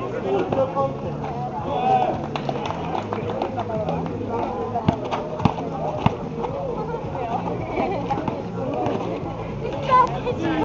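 Indistinct voices of basketball players and onlookers talking and calling out over one another, with three sharp knocks about half a second apart in the middle.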